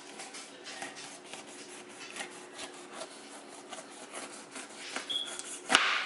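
Kitchen knife slicing down the side of a whole pineapple, the blade rasping through the tough, spiky rind in a series of short, irregular scrapes, with a sharp knock near the end.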